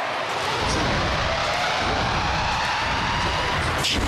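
Loud mixed arena noise as a robot combat bout gets under way: a dense din with a deep rumble that rises suddenly at the start, a faint rising whine through the middle, and a sharp crack just before the end.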